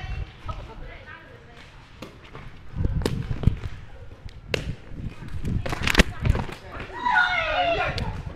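Shuttlecock kicks in a rally: three sharp taps of a shoe on the shuttlecock, about a second and a half apart, mixed with thuds of players' feet on the hard court. Voices come in near the end.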